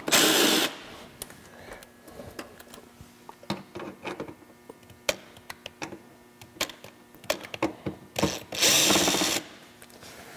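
Cordless drill with a Torx bit backing out the factory screws from the wheel-well trim. It runs in two short bursts, one at the start and a longer one near the end, with scattered light clicks and knocks in between.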